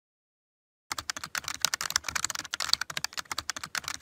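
Rapid typing on a computer keyboard: a fast, uneven run of key clicks that starts about a second in.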